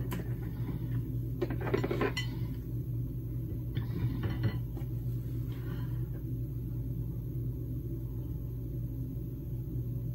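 Makeup items being handled: a few short clatters of hard plastic in the first half as a compact mirror and brush are taken up, over a steady low hum.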